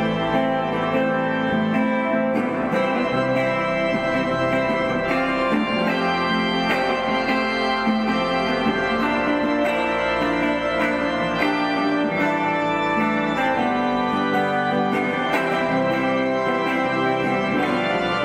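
Church organ playing held, slowly changing chords together with an archtop electric guitar picking notes, a live organ-and-guitar duet.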